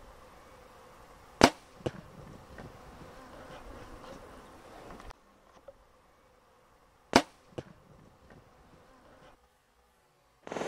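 Two sharp clicks about six seconds apart, each followed by a fainter click under half a second later, over a faint outdoor background.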